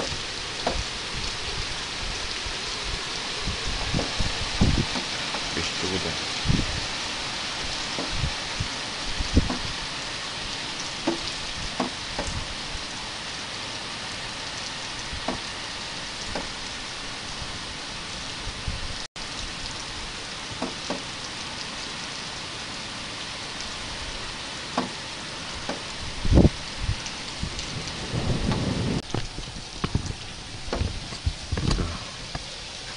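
Steady rain in a thunderstorm: an even hiss with scattered heavy drops tapping on a surface close by, and a low rumble of thunder near the end.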